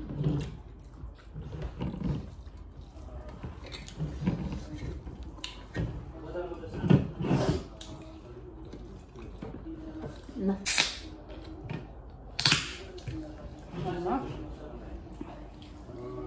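Voices talking at a meal table, not loud, with eating and table sounds. Two sharp clicks come near the eleventh and thirteenth seconds, the second trailing into a short hiss.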